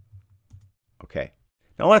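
A few faint computer-keyboard keystrokes, typing a short name, followed by a brief voice sound and then speech near the end.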